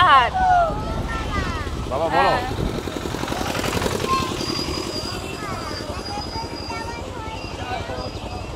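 Steady low rumble of road and vehicle noise while moving along a busy market street, with a couple of short bits of speech in the first few seconds.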